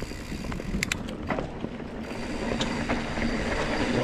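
Mountain bike rolling down a dirt trail: knobby tyres on packed dirt and roots make a steady rumble, with a few sharp clicks and knocks from the bike in the first half. It grows louder as the bike picks up speed.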